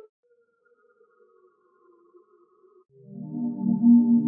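R&B one-shot samples auditioned one after another: faint held synth tones for the first three seconds, then, about three seconds in, a much louder reversed bass one-shot swelling up, full of overtones.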